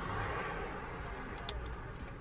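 Faint background voices over a low, steady rumble, with a single sharp click about one and a half seconds in.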